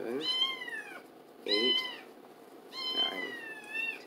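Domestic cat meowing three times in a row, each meow a long high call that falls slightly in pitch at its end.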